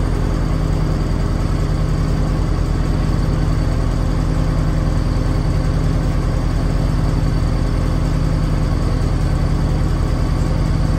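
Steady, loud mechanical hum with a fast pulsing beat from the onboard machinery of a stationary trolley car, heard from inside the car.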